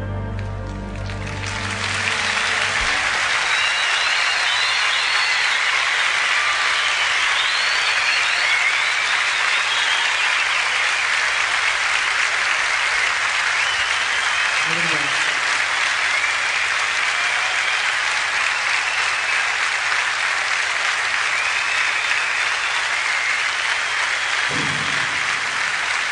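The last held chord of the song dies away in the first second or two, then a large concert audience applauds steadily and at length.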